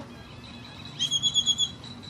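A small bird calling: a rapid run of about seven short, even, high-pitched notes lasting under a second, about a second in.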